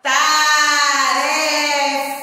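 A woman singing one long held note that starts abruptly.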